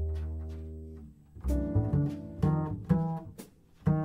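Jazz blues recording of piano with a double bass: struck notes and chords that ring and die away in short phrases, over deep bass notes.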